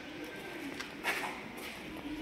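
Low, wavering cooing of a bird, with a short rustle about a second in.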